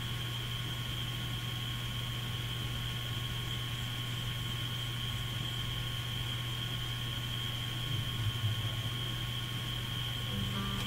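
Steady low electrical hum and hiss with a thin, unchanging high whine, with a slight stir in the hum near the end.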